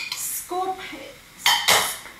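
A spoon scraping and knocking against a bowl as thick squash sauce is scraped out into a pan, with two strong scrapes about one and a half seconds in that are the loudest part. A brief bit of voice in the middle.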